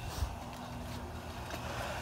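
Garden hose spraying into shallow pond water, a steady low rush of churning, splashing water.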